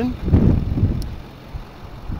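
Wind buffeting the microphone: an uneven low rumble, loudest early and fading away, with one faint click about a second in.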